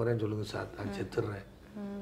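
Only speech: a man talking, trailing off into a short held vowel near the end.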